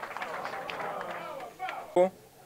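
Indistinct murmur of several voices in a room, fading out about a second and a half in, followed by a short, loud vocal sound right at the end.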